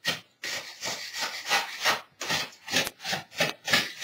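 Metal putty knife scraping along the rim of a plaster casting in short repeated strokes, about two or three a second. The blade is working to free the casting where it is sticking to its mold.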